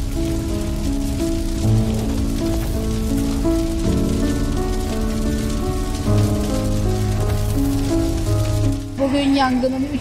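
Background music of slow, held notes over a dense, steady crackle from a burning forest fire. A woman's voice comes in near the end.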